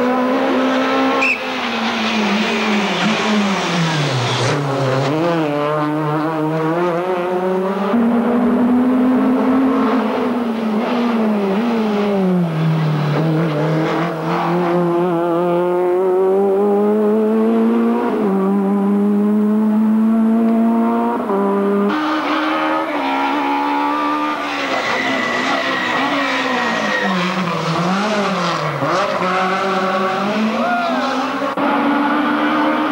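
Rally cars on a tarmac special stage, engines revving hard and dropping again as they change gear and brake for corners, one car after another with abrupt cuts between them.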